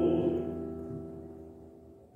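Classical voice-and-piano music at the end of a phrase: a held chord fades away over about two seconds, dying almost to silence by the end.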